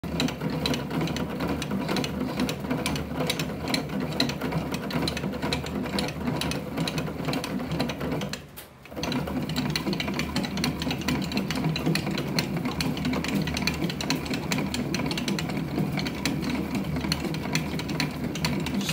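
Hand-turned bat rolling machine pressing a composite baseball bat between its rollers, a steady mechanical whir with fast clicking. It pauses briefly about halfway through, then carries on.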